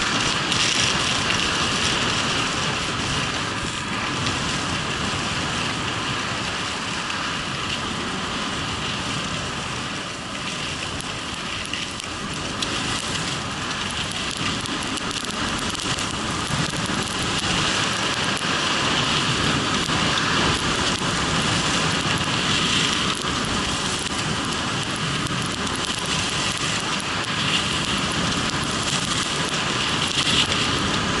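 Continuous rushing noise of skiing downhill: wind rushing over a body-worn camera's microphone together with skis hissing and scraping on groomed snow.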